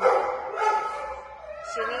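Dogs barking and yipping in shelter kennels, loudest right at the start, with shorter held calls after.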